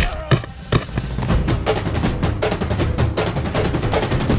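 Fight-scene soundtrack: a couple of hard hit sound effects in the first second, then fast, driving drum beats in the action score.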